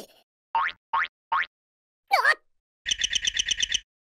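Cartoon sound effects: three short rising pitch glides in quick succession, a swooping glide about two seconds in, then a rapid warbling trill of about ten pulses a second near the end.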